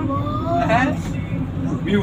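Low, steady engine drone of a moving vehicle heard from inside its cabin, with people talking over it.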